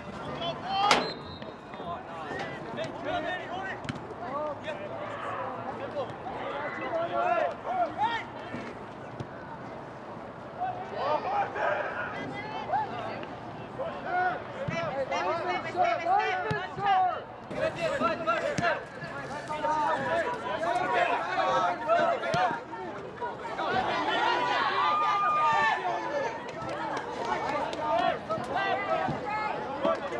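Players on a soccer field shouting and calling to one another, their voices distant and overlapping, with a few sharp knocks; the loudest knock comes about a second in.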